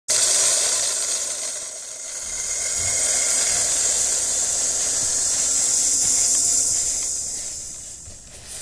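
A loud, steady hiss of noise, like static, that starts abruptly, dips briefly about two seconds in, then holds steady before fading toward the end.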